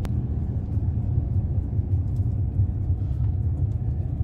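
In-cabin sound of a Maruti Suzuki Alto 800 cruising in top gear: its three-cylinder petrol engine and road noise make a steady low rumble.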